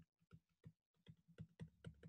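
Faint taps and clicks of a stylus pen on a tablet screen while writing digits by hand: a quick irregular run of light ticks that come closer together in the second half.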